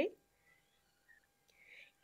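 Near silence after a woman's voice trails off at the start, with only a faint soft hiss near the end.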